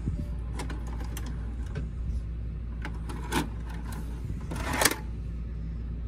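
A Sanyo VWM-696 VHS VCR ejecting a tape: its loading mechanism clicks repeatedly over a steady low hum. A louder clatter comes near the end as the cassette comes out and is handled.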